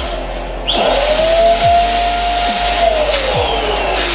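Electric twin-nozzle balloon pump switching on about a second in and running steadily while it inflates two latex balloons at once, its pitch dropping over the last second or so.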